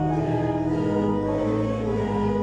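A church congregation singing a hymn together in slow, held notes, accompanied by an organ.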